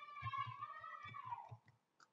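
Faint clicks of a computer mouse. Under them is a faint held hum that dips in pitch and fades out about three quarters of the way through.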